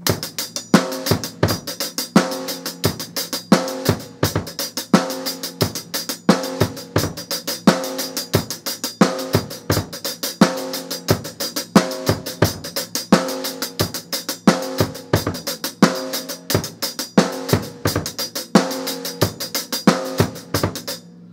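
Drum kit played in a steady practice pattern: snare drum strokes with cymbal and pairs of bass drum kicks played together, loud accents coming about every second and a half without a break.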